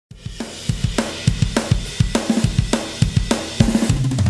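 Background music: a rock drum beat of kick, snare and hi-hat, ending in a quick drum fill.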